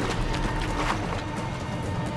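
A grizzly bear splashing through a shallow river at a run, its strides in the water heard as irregular splashes. Background music with a held tone plays over it.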